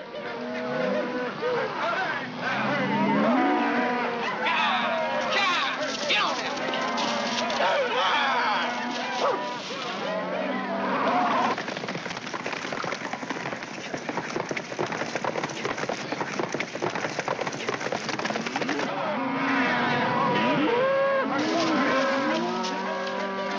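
A herd of cattle being driven, many animals lowing and mooing over one another. A dense clatter of hooves fills the middle stretch, and the calls rise again near the end.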